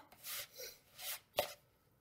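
A metal spoon stirring a crumbly oat-and-raisin cookie mixture in a mixing bowl: a few short rasping scrapes, then a sharp tap about a second and a half in.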